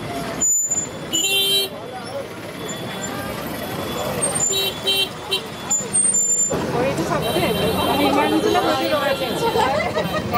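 E-rickshaw horn beeping: one toot about a second in, then three short toots around five seconds in, over people's voices and street noise.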